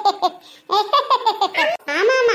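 A high-pitched, sped-up cartoon voice laughing in quick repeated ha's. There is a short run at the start, then a longer run from about a second in.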